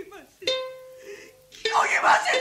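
Gidayū shamisen struck with the plectrum, a note about half a second in ringing on, and another just before the end, under a female gidayū chanter's sung-spoken narration, which grows loud near the end.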